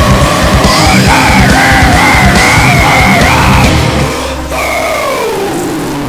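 Goregrind band playing: fast, dense drumming under a high, wavering held note. The drums stop about four seconds in, and the held note slides down in pitch and fades as the track ends.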